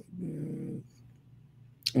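A man's short, low closed-mouth "hmm", under a second long, near the start, followed by faint room tone.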